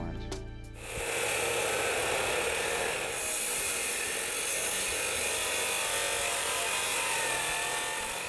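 DeWalt abrasive chop saw cutting through steel rifle barrels, the cut-off wheel grinding steadily through the metal. The grinding starts about a second in, after a short tail of music, and turns harsher about three seconds in.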